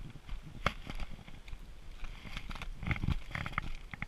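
Footsteps crunching through deep fresh snow, irregular crackling steps with a few duller thuds, the heaviest about three seconds in.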